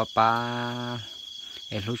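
Crickets trilling: one steady high-pitched tone that runs on unbroken beneath a woman's voice.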